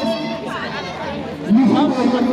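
Several people talking over one another, with one loud voice cutting in about one and a half seconds in.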